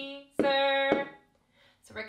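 A woman sings a held note of a children's counting song while tapping a drumstick on the floor twice, about half a second apart, two taps to one sung syllable. Near the end she starts speaking.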